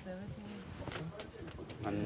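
Quiet, low voices murmuring, with a few faint clicks and knocks from things being handled.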